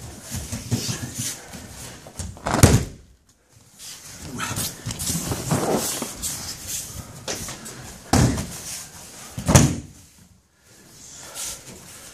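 Bodies slamming onto tatami mats as partners are thrown and break their fall: three heavy thuds, one about three seconds in and two close together later, with scuffling on the mat between.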